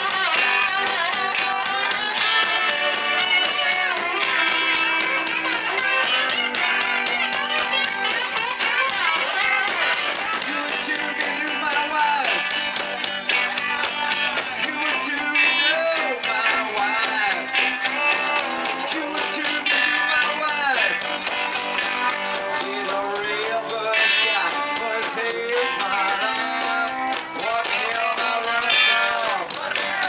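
Live rock band playing an instrumental break, an electric guitar taking the lead over the band, its notes bending up and down in pitch.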